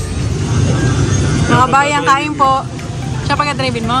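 A low steady rumble with music under it, then a person's voice in a few short phrases through the second half.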